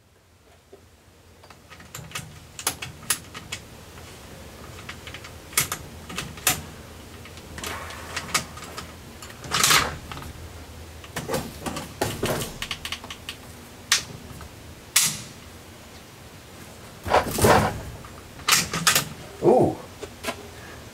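Mosin-Nagant bolt-action rifle being handled and its bolt worked: a scatter of sharp metallic clicks and clacks, with louder clacks about 10, 12, 15 and 17 seconds in.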